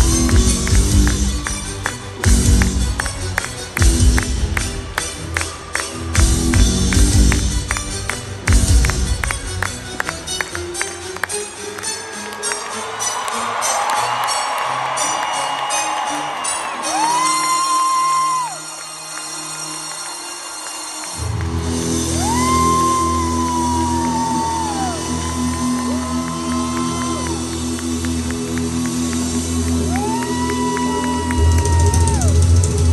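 A rock band playing live in an arena: heavy full-band hits with cymbals every two seconds or so over a quick tambourine-like beat. About ten seconds in the bass and drums drop away, leaving a sustained lead line that bends up into its long notes, and about 21 seconds in the full band comes back in under it.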